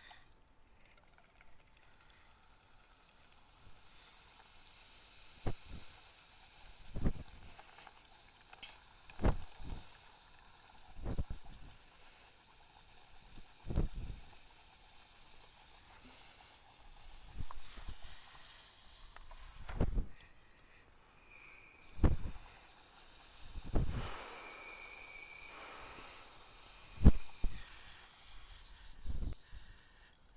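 Liquid nitrogen hissing as it boils off while being poured through a funnel into a plastic bottle, with low thumps every couple of seconds and a brief high tone twice near the end.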